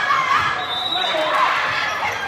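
Indoor volleyball rally: players' calls and spectators' voices echo through the gym, with sneakers squeaking on the hardwood court.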